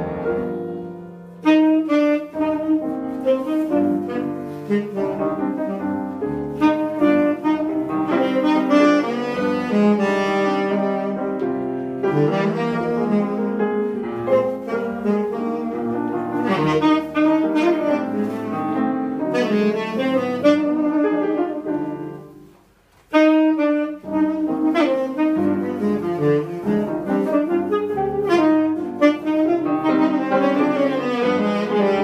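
Live jazz saxophone playing a melody over grand piano accompaniment, the piano an 1890-era Carl Bechstein. The music stops for a moment about three-quarters of the way through, then carries on.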